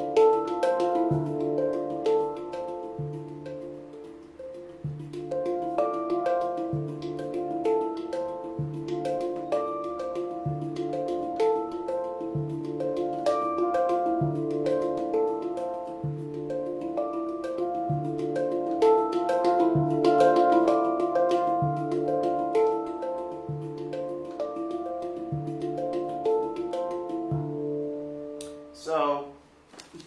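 Handpan played in a flowing triplet groove: quick ringing notes on the tone fields with light taps, over a low bass note struck about every two seconds. The playing stops about a second before the end.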